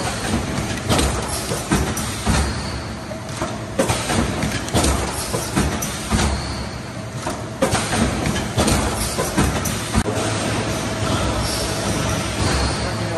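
Dairy packaging line running: conveyor and yogurt-cup filling and sealing machinery giving a steady rumble with frequent irregular clicks and clacks.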